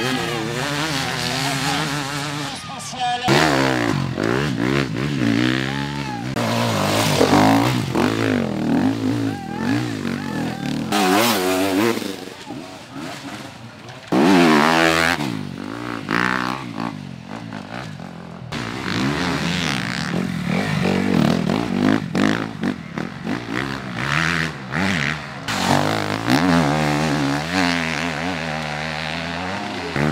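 Enduro motorcycle engines revving hard, their pitch repeatedly climbing and dropping as riders accelerate and shift through the course. The sound changes abruptly a few times from one bike to another.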